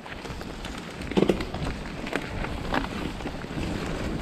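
Mountain bike rolling over a rough dirt trail: a steady rumble of wind on the microphone and tyres on the ground, with a few sharp rattles and knocks from the bike going over bumps.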